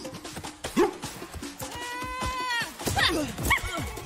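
Action film score with a steady beat, over which a person lets out a strained, wavering cry lasting about a second in the middle, with short falling grunts around it, as in a struggle.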